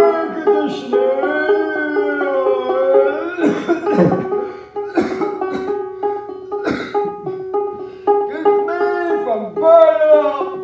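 Banjo playing, with sharp plucked attacks over a steady droning note, and a voice singing along in long gliding notes without clear words.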